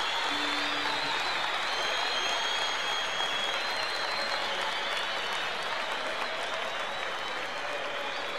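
Concert audience applauding steadily, with a few high whistles over the clapping.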